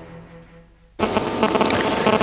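The tail of a TV programme's theme music fades out. About a second in, a steady electrical buzz starts abruptly as the news report's audio cuts in.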